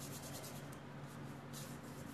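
Faint scratchy rubbing or rustling, in two short runs about a second apart, over a steady low hum.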